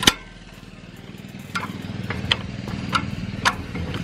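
Hand crank on a Firminator G3's disc-lift jack being worked: a sharp click at the start, then a few scattered clicks of the crank mechanism. Under it a steady low engine hum.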